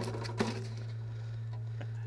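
A mangrove snapper landing on a fiberglass boat deck: two sharp knocks near the start, about half a second apart, over a steady low hum.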